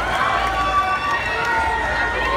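Concert crowd cheering and shouting, many voices at once, between songs.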